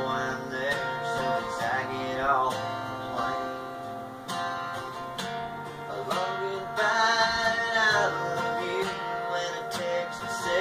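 A man singing while strumming a cutaway acoustic guitar, with a long wavering held note about seven seconds in.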